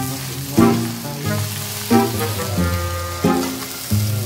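Rice frying and sizzling in a wok as it is stirred. Background music with held notes that change about every second and a half plays over it.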